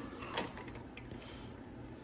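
Quiet kitchen room tone with one faint light clink about half a second in, from a hand working in a stainless steel bowl of ice water.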